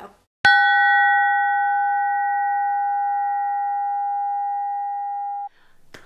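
A bell struck once, ringing with a clear, steady tone for about five seconds before it is cut off abruptly.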